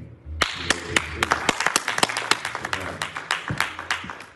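Small congregation clapping their hands in applause, starting abruptly about half a second in and thinning out toward the end.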